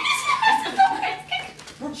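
A woman's high-pitched, wordless vocal noise that slides down in pitch over the first second and dies away near the end.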